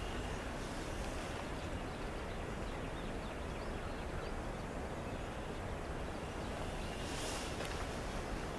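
Steady outdoor background noise, an even low rumble and hiss, with a brief faint high sound about seven seconds in.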